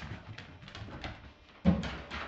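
Light, irregular clicks of a dog's claws on a wooden floor as it moves about, then a short loud sound near the end.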